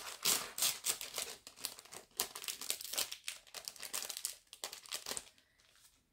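Crinkling and rustling of a clear plastic packet as a folded sample of cross-stitch fabric is slid back into it and set down. The rustling is busy at first, thins out, and stops about five seconds in.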